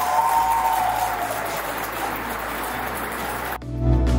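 Audience applauding for about three and a half seconds, then cut off abruptly by background music.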